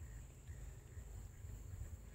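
Faint outdoor background: a steady high-pitched hum over an uneven low rumble.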